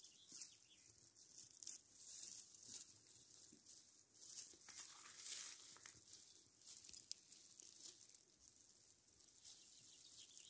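Near silence: a faint hiss with soft, scattered rustling and crackling of low grass and dry plants.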